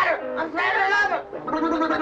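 A punk band's lead singer wailing into the microphone, his voice bending up and down in short phrases with hardly any instruments behind it.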